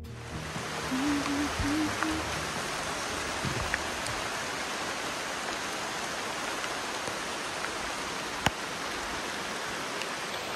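Rain falling steadily on the rainforest canopy and leaves: a sudden shower that has just started, making an even hiss. A single sharp tick comes late on.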